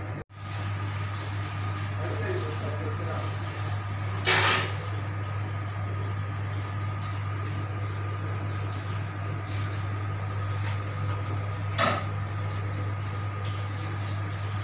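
Steady low hum of kitchen machinery, broken by two short bursts of noise, one about four seconds in and one near twelve seconds.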